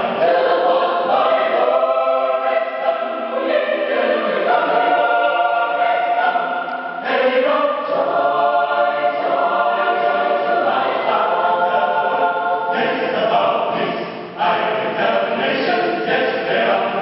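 Mixed choir of women's and men's voices singing a cappella, a gospel spiritual sung with full, sustained chords. The singing eases briefly about fourteen seconds in, then resumes.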